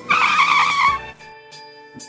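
A car tyre-screech sound effect lasting about a second, the loudest thing here, over a light intro jingle that carries on quietly after it.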